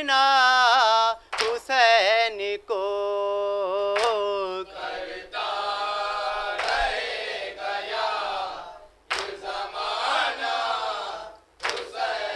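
Noha sung without instruments: a lone high voice sings a line, then from about five seconds in a group of men chants the response together. Matam chest-beating lands in time with it, one hand slap about every two and a half seconds.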